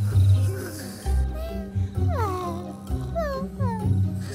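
Cartoon snoring by sleeping animated ants: low rumbling snores about once a second, with falling whistle-like glides on the out-breaths, over soft background music.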